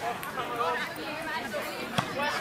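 Several people chatting close by, their voices overlapping: spectators' conversation.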